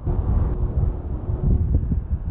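Wind buffeting the microphone outdoors: a loud low rumble that rises and falls unevenly, with a faint steady hum underneath for the first second and a half.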